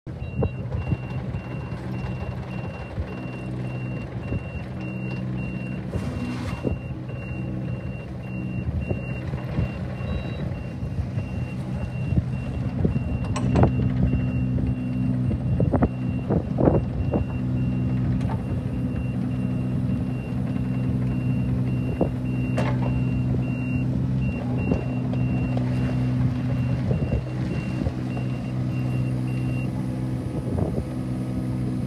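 Kubota U25 mini excavator's 21 hp diesel engine running as the machine travels on its rubber tracks, with its travel alarm beeping in a steady, high, pulsing tone that stops just before the end. The engine grows louder about halfway through, and a few clanks sound in the middle.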